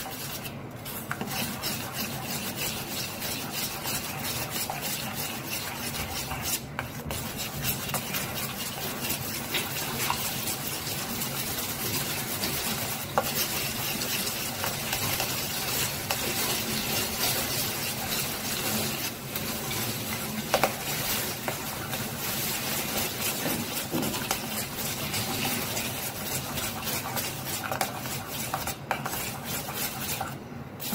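Malai (milk cream) mixed with cold water being beaten by hand in a stainless steel bowl, a rapid, continuous stirring with the utensil scraping and clinking against the metal. This is the churning stage that splits the cream into butter and water for making ghee.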